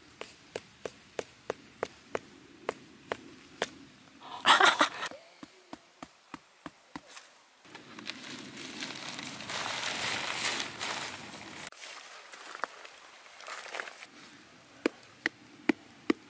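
A rock being used as a hammer to knock a tent stake into the ground: sharp knocks about three a second, with a louder scuffing burst midway. Then a few seconds of nylon tent fabric rustling, and a few more knocks near the end.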